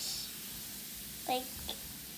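LOL Surprise Pearl fizz ball dissolving in a bowl of water, giving a faint, steady fizzing hiss.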